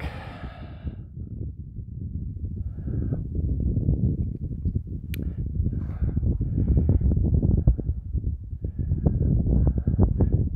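Wind buffeting the microphone: a low rumble with rapid flutter that grows louder about three seconds in, with a single sharp click about halfway through.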